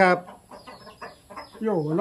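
Chickens clucking faintly in the background in a short pause in speech.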